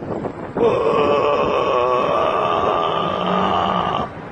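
A man's voice giving one long, drawn-out wailing moan, held for about three seconds with a brief waver in the middle, in imitation of a gaping carved stone mask.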